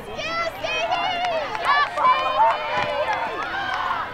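Several high-pitched voices shouting and talking over one another. The loudest calls come about halfway through.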